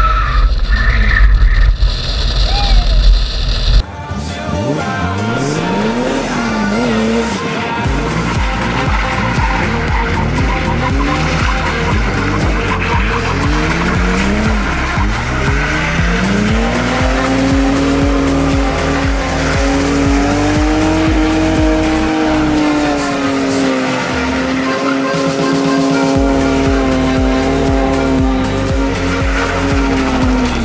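BMW E30 325i's M20B25 straight-six with Hartge headers revving hard several times in rising sweeps, then held at high revs for a long stretch with tyre squeal from a burnout, the revs dropping near the end. Background music with a steady beat runs underneath.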